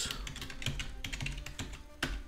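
Computer keyboard keys clicking in a quick run of keystrokes as a short command is typed.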